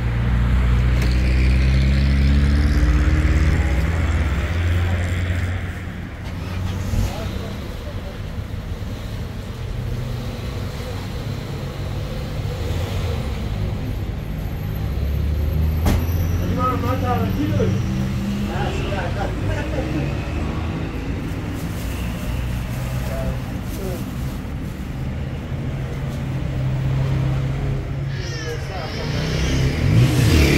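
A motor vehicle's engine running close by, a low hum that is strongest in the first few seconds and swells again in the second half, with people talking now and then.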